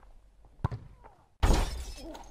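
A football kicked with a single sharp thud, then about a second later a sudden loud crash of shattering glass that fades quickly.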